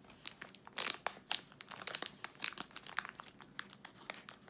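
Metallic foil snack wrapper crinkling in a quick, irregular run of sharp crackles as a wrapped lemon pie is handled and torn open.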